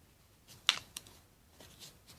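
Hands handling clothing and a card hang tag: a few short crisp clicks and rustles, the sharpest about two-thirds of a second in, then softer ones near the end.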